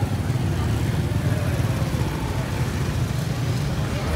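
A car's engine running low and steady close by, under faint street voices.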